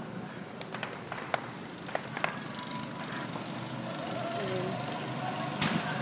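Steady outdoor hum with a few sharp clicks and faint voices in the background, growing a little louder over the last two seconds.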